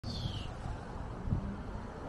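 Low, steady rumble of street traffic, with one short, high, falling bird chirp right at the start.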